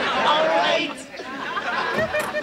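A sitcom studio audience reacting with many overlapping voices in a loud burst of exclamations and chatter. It peaks in the first second, then eases off.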